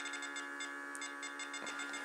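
Steady electric hum of a small running pump, with a high-pitched electronic tone beeping rapidly on and off over it.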